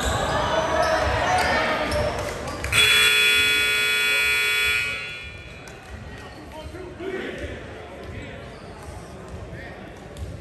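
Gymnasium scoreboard horn sounding once for about two seconds, a few seconds in, over spectators' chatter and a ball bouncing on the gym floor.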